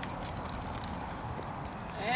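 Faint outdoor background noise with a low rumble and a few light clicks; no clear single source stands out.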